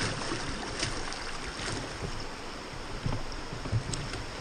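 Fast river water rushing around a rowed raft, with a few short splashes from the oars; the sharpest comes near the end. Wind on the microphone adds low rumbling thumps.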